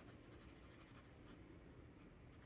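Very faint scratching of a fountain pen nib moving across journal paper while writing.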